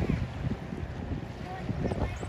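Gusty wind buffeting the microphone: an uneven low rumble that rises and falls.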